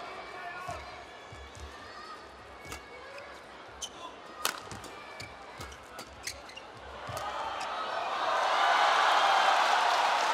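Badminton rally: a series of sharp racket strikes on the shuttlecock, about one a second. From about seven seconds in, the arena crowd cheers and claps, swelling to its loudest near the end.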